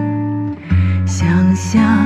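A man singing a slow Mandarin ballad to strummed acoustic guitar. He holds a long note, breaks off about half a second in, and starts the next phrase.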